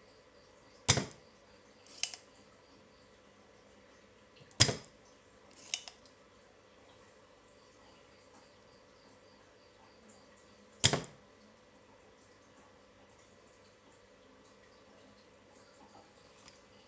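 Spring-loaded desoldering pump (solder sucker) firing with a sharp snap three times, sucking solder from joints on a circuit board. Each of the first two snaps is followed about a second later by a softer click as the plunger is pushed back to re-cock it.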